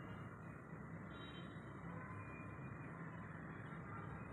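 Quiet, steady background noise: a low hiss and hum of room tone, with no distinct knocks or strokes.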